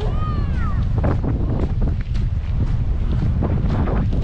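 Wind buffeting the microphone, a steady low rumble. A brief high call that rises and falls sounds in the first second.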